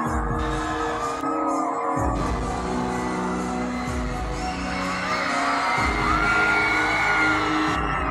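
Loud live metal band music heard from the crowd: held notes and a gliding melody over heavy low drum and bass hits. The low end drops out briefly about a second in and again near six seconds.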